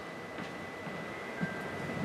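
Quiet hall room tone during a pause in a talk, with a faint steady high-pitched tone and a soft knock about one and a half seconds in.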